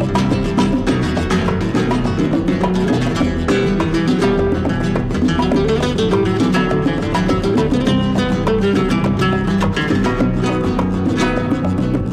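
A flamenco guitar playing a continuous flamenco piece, dense with rapid picked notes.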